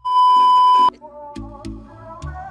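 A loud, steady TV test-pattern beep at about 1 kHz, lasting just under a second and cutting off suddenly. Music with a beat starts right after it.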